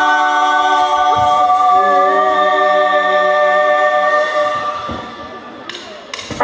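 A live dance band holds long sustained chords that change once or twice, then fade away about five seconds in, with a few faint clicks as the sound dies.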